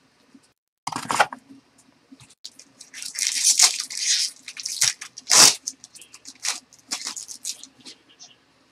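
Foil wrapper of a baseball card pack crinkling and being ripped open by hand, in a series of crackling tears, the loudest a sharp rip about five seconds in.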